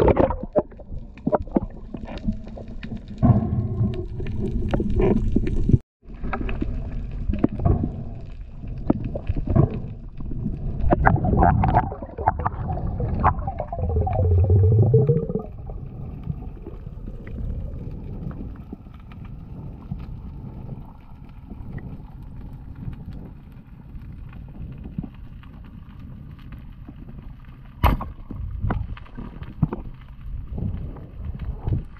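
Water noise picked up by an action camera in the sea during a breath-hold spearfishing dive: loud gurgling and crackling water rush for about the first fifteen seconds, then a quieter, steady underwater hum as the diver goes down toward the reef, with one sharp click near the end.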